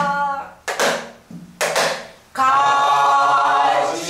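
Pansori singing accompanied by a buk barrel drum: a held sung note ends, the drum is struck in two pairs of strokes during a short pause, and the singing resumes about two and a half seconds in.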